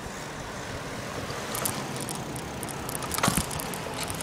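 Steady outdoor street noise with scattered light clicks in the second half and a sharper knock a little over three seconds in.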